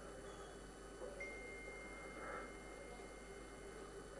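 Quiet room tone with a low hum, and a faint, steady high-pitched tone that starts about a second in and lasts almost three seconds.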